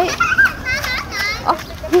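Voices only: short bursts of high-pitched chatter from women and children talking.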